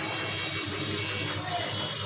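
A steady mechanical drone with several held tones, with faint voices in the background.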